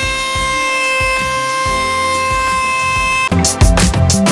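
Router-table motor spinning a round-over bit, a steady high-pitched whine as it rounds the edge of a plywood box, over background music with a beat. The whine cuts off suddenly about three seconds in and the music's drums come forward.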